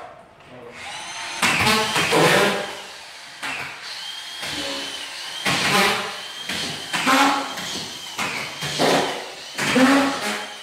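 Power screwdriver (drywall screw gun) driving screws up through a plasterboard sheet into the ceiling, in several short runs of a few seconds or less with the motor whining between them.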